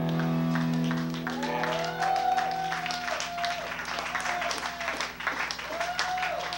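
A held electric guitar chord rings out at the end of a song and fades about a second and a half in, followed by the audience clapping and cheering.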